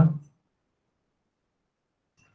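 A man's voice finishing a spoken name, cut off within the first moment, then dead silence on the line.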